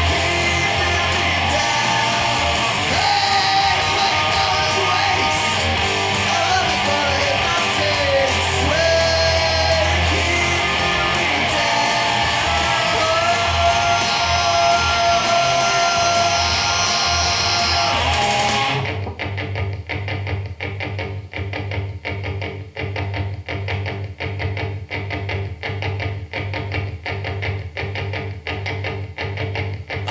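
Rock guitar music in an instrumental passage: a loud, full section that cuts suddenly, about two-thirds of the way through, to a quieter run of evenly repeated short notes.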